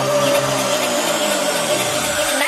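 Electronic dance music at a transition in a deep house mix: a dense noise wash with one held tone, as the bass line drops out within the first second.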